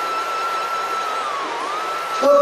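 A steady high-pitched tone over a hiss, dipping briefly in pitch about one and a half seconds in.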